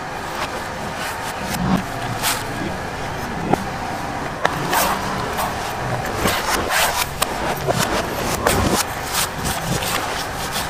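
A large knife chopping and shaving the green husk of a young coconut on a wooden chopping block. The sharp cuts and scrapes come close together in the second half, over a steady background noise.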